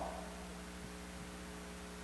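Steady electrical mains hum with a stack of even overtones under a faint hiss.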